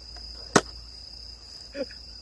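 Steady high-pitched chirring of night insects, with one sharp click about half a second in.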